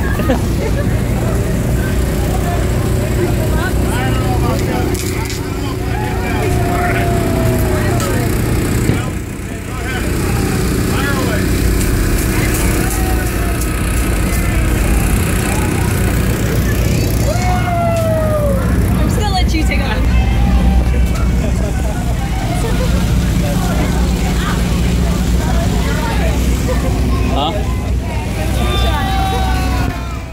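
Steady low hum of a boat's engine running, with people's voices and occasional falling shouts over it.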